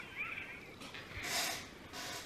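A soft, short, high-pitched vocal sound that rises and falls, then a brief breathy hiss about a second and a half in.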